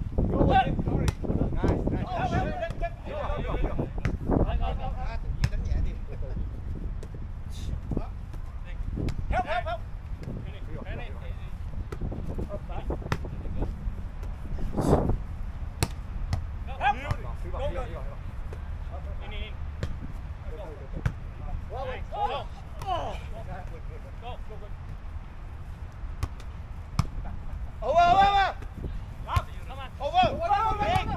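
Outdoor volleyball rally: players' shouted calls come and go across the court, the loudest one near the end, mixed with sharp smacks of the ball being hit, the strongest about halfway through. A steady low rumble of wind on the microphone runs underneath.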